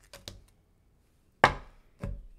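A deck of tarot cards knocked down on a wooden desk top: a sharp knock about one and a half seconds in and another at the very end, after a few faint clicks of cards being handled.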